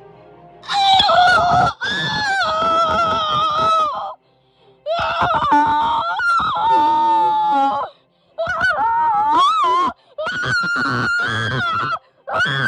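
A young singer's voice belting long, high, wordless notes with a wavering pitch, strained to the edge of screaming, in about five phrases broken by short gaps. It is a deliberately bad cover of the song's high vocalise.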